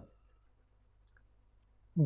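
A few faint, scattered clicks of a stylus tapping on a writing tablet as a word is handwritten.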